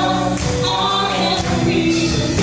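Live worship band (drums, bass guitar, electric guitar and keyboard) playing a worship song while singers sing along.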